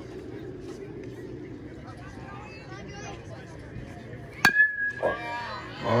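A baseball bat hitting a pitched ball once, about four and a half seconds in: a sharp crack with a short ringing tone after it. Before the hit there is a faint murmur of spectators, and voices rise just after it.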